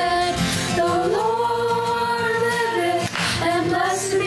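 Young voices of a virtual choir singing long held notes, with no words made out.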